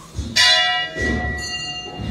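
Metal temple bell struck once about a third of a second in, then ringing on with a long, slowly fading ring.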